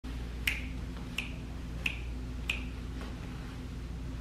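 Four finger snaps in a steady rhythm, about two-thirds of a second apart, ending about two and a half seconds in, over a low steady room hum.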